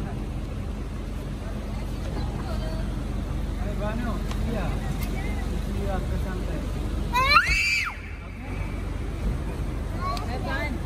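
Steady low rumble of airport traffic and background with faint, scattered voices. About seven seconds in, a young child gives one short, high-pitched squeal that rises and falls.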